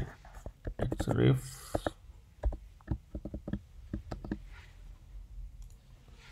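Computer keyboard typing: irregular short keystroke clicks, some in quick runs, as code is typed. A short vocal sound comes about a second in.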